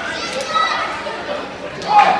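Live wrestling crowd calling out, children's high voices among them, with one louder shout just before the end.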